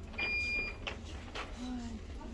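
A single short electronic beep, one steady high tone lasting about half a second, over a low background hum.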